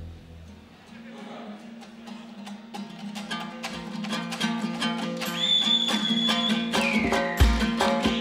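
A music intro starting up: a plucked string instrument picks out rapid notes over a low steady drone, growing louder. A high held tone slides down in pitch after about five seconds, and a deep drum hit comes near the end.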